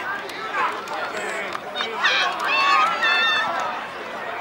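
Several voices shouting and calling out at once on a lacrosse field during play, loudest from about two to three and a half seconds in, with a few sharp clicks.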